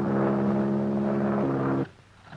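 Biplane's propeller engine in flight, a steady drone that cuts off abruptly near the end.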